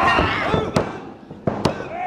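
Two sharp slaps in a wrestling ring, about a second apart, with a wrestler's shout at the start.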